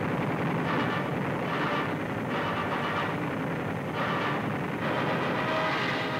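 Dubbed combat sound effect of aircraft engines and machine-gun fire: a steady, dense roar that swells roughly once a second.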